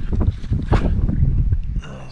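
Wind buffeting the microphone, a low rumble that falls away near the end, with a brief knock about three-quarters of a second in.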